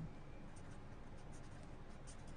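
Marker pen scratching faintly on paper in short strokes as words are handwritten.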